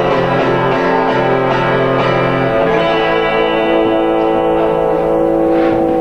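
Acoustic guitars playing the closing chords of a song, the last chord held steadily from about halfway through.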